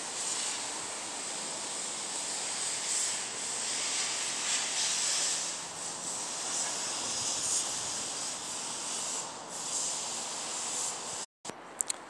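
Steady outdoor hiss that swells and eases a little, with no engine running. It cuts out for an instant near the end.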